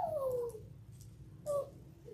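A high, pitched cry that slides down in pitch over about half a second, then a brief second cry about a second and a half in.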